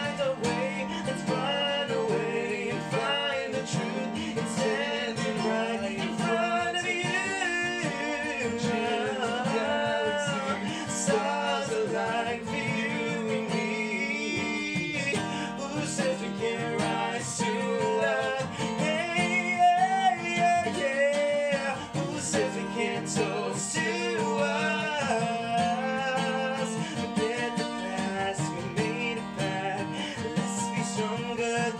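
Acoustic guitar strummed in a steady rhythm while a man sings the melody over it.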